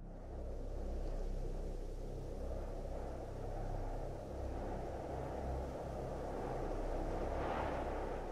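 Low, steady rumbling noise with no speech, swelling a little near the end.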